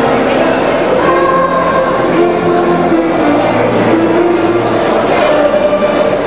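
Children's music ensemble performing, with long held notes at several pitches over the chatter of a crowd.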